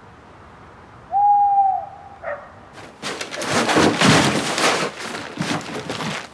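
A single owl's hoot, one steady note of just under a second about a second in, then from about three seconds on a run of irregular rustling and knocking.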